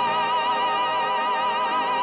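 Tenor and soprano singing together in operatic style, holding one long high note with a wide, even vibrato over an orchestra.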